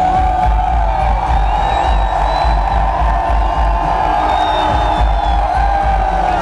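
Loud music over a concert PA with a steady low thump. A crowd cheers over it, with high calls rising and falling above the music.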